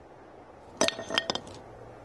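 Hard objects clinking against each other as items are handled in a bag: a quick run of about six sharp clinks, each with a short ring, a little under a second in.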